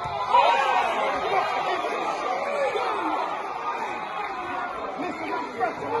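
Football crowd of many voices shouting and calling at once, louder just after the start, as the crowd reacts to play in the goalmouth.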